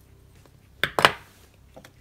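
Heavy-duty steel pliers crimping a metal ribbon end shut: two sharp metallic clacks about a second in, the second louder with a brief ring, then a faint click near the end.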